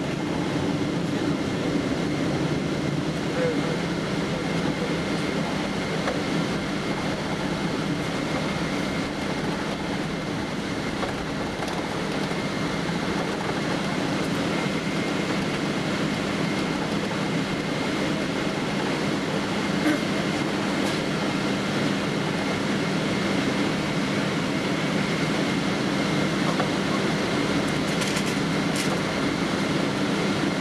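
Steady cabin noise inside a Boeing 777-200ER taxiing after landing: a continuous hum of the aircraft's engines and air conditioning with the rumble of the airliner rolling along the taxiway.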